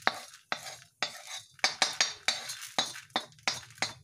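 Metal clinking and scraping on a steel plate as roasted chana dal, urad dal and dried red chillies are moved about on it: about ten sharp strokes at an uneven pace.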